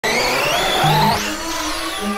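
Arrma Outcast 4S RC truck's brushless electric motor whining and rising steadily in pitch as the truck accelerates, with tyre noise. Music comes in about a second in.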